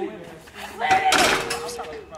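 A basketball hits the metal rim and backboard of a driveway hoop about a second in: a clang followed by a short ringing tone from the rim, with players' voices around it.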